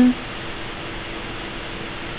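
Steady background hiss with a faint, even hum: room tone, heard after the tail of a spoken word right at the start, with one faint click about one and a half seconds in.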